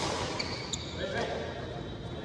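A sharp crack of a badminton racket hitting the shuttlecock right at the start, followed by short squeaks of sports shoes on the court floor and brief voices.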